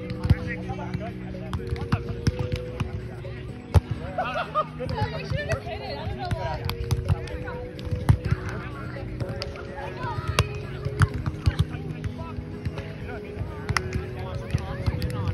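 Sharp slaps of a volleyball being passed and hit, with the loudest about four seconds in. Background music with held notes runs underneath, along with distant voices.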